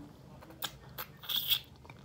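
Biting and chewing on a piece of chicken close to the microphone: a few short crunches, the loudest cluster a little past halfway.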